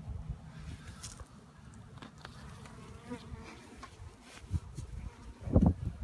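Honeybees buzzing around an opened hive, a low steady hum, with a brief thump near the end.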